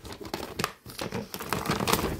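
A plastic shopping bag and the packaged items inside it crinkling and rustling irregularly as a hand rummages through it.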